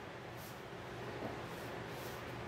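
Faint rustling of raw cotton fabric as hands smooth and handle it on a cutting mat, with a couple of soft swishes.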